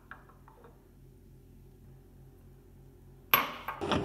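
A ceramic mug clinks lightly a few times on a stone countertop, then a faint steady low hum. Near the end, a sudden loud rush of noise sets in.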